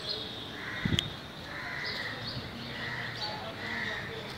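A series of short, harsh animal calls repeating roughly once a second over steady outdoor background noise, with a single sharp thump about a second in.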